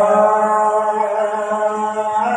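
A man's voice singing a naat unaccompanied into a microphone, holding one long, steady note.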